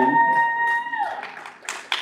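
A single high held note with one overtone, swooping up at the start, held for about a second and falling off at the end. A few sharp knocks from a table microphone being handled follow near the end.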